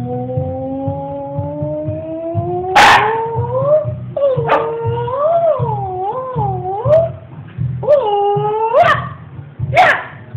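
A Shiba Inu howling in four long, drawn-out calls that rise and waver up and down in pitch. A sharp, loud burst breaks in about three seconds in.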